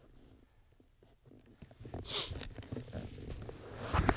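Handling noise from a camera being moved and adjusted by hand: near silence, then from about halfway through a run of irregular bumps, rubbing and a brief scrape.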